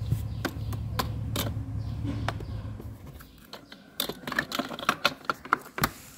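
Small plastic dollhouse pieces clicking and tapping irregularly as a doll is handled and set down among the toy furniture. The clicks come faster and closer together in the last couple of seconds.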